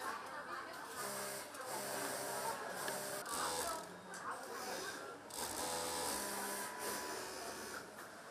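Industrial overlock (serger) sewing machine running in several short start-stop bursts, each about a second long, as it stitches the edge of shirt fabric.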